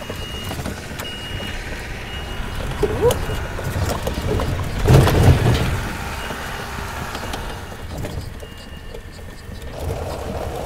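Small utility vehicle's engine running as it moves off, with a few short, high beeps of its reverse alarm. A louder engine surge comes about five seconds in.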